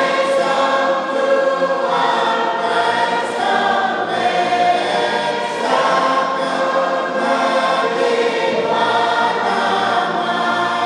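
A church congregation singing a hymn together, many voices holding long notes that change every second or so.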